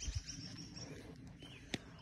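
Quiet outdoor background with a few faint bird chirps and one short click near the end.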